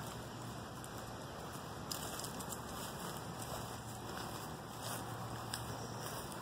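Faint, steady outdoor background noise with light crackling and a few scattered soft ticks.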